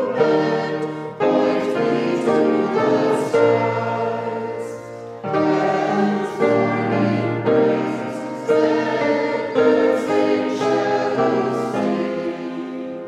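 Congregation singing a hymn together with keyboard accompaniment, chords changing every second or so.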